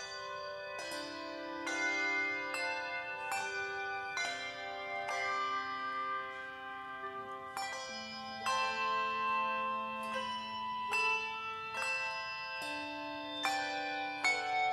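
A handbell choir ringing a slow piece: chords of bells struck together about once a second, each left to ring on and blend into the next.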